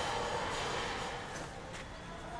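Steady machinery running noise with a faint hum, easing off slightly toward the end.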